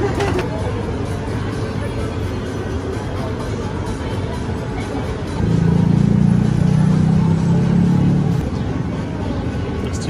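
Steady street traffic noise. A vehicle engine runs louder for about three seconds in the middle.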